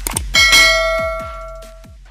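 Notification-bell sound effect: a couple of quick clicks, then a single bright ding about a third of a second in that rings and fades over about a second and a half. Electronic music with a deep kick drum runs underneath.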